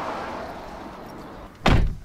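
A Toyota SUV's door shut once with a single heavy slam near the end, after a steady rushing noise.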